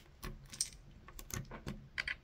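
Faint, scattered clicks and taps of hard plastic as LEGO minifigure helmets are pulled off the heads and set down, about five small clicks in two seconds.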